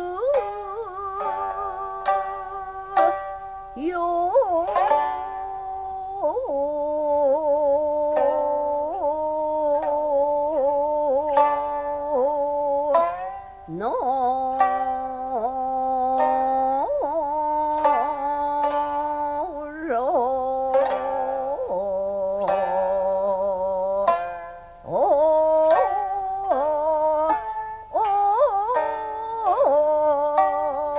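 Jiuta: a woman singing in long, drawn-out, wavering phrases while accompanying herself on the shamisen (sangen) in honchoshi tuning, with sharp plucked notes between and under the held vocal tones.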